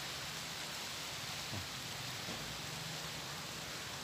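Steady outdoor background hiss, even throughout, with no distinct sounds standing out.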